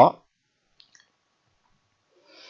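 A spoken syllable at the very start, then two faint computer-mouse clicks close together about a second in.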